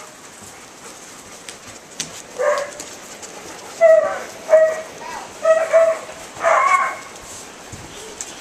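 A dog barking: a series of about five short, high, steady-pitched barks in the second half, the last one a little longer.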